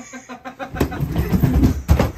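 A hard-shell suitcase tumbling down carpeted stairs: a quick run of dull thumps, one per step, growing louder, ending in a heavier thump as it lands at the bottom.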